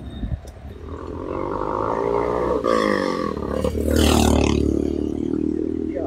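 Motorcycle engine passing close by in road traffic, its pitch sliding down around the middle and the sound loudest about four seconds in.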